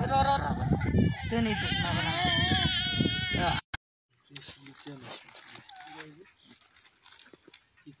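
Infant crying, a loud wavering high-pitched wail that cuts off suddenly about three and a half seconds in, followed by faint voices.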